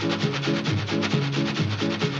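Instrumental passage of a 1940s Hindi film song played by the film orchestra: a stepping bass line under a fast, even percussion rhythm, with no singing.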